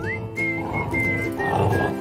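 Basset hounds growling as they tug on a toy, a rough growl building near the end, over background music with a whistled melody.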